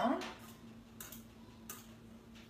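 Fork mashing avocado in a small bowl: a few faint clicks of the fork against the bowl over a steady low hum.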